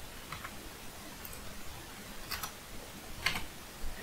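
A handful of faint, scattered computer keyboard keystrokes, single taps a second or so apart.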